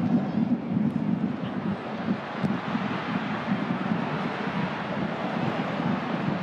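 Stadium crowd noise from a football match: a steady din from the stands with a regular low pulse, with no single event standing out.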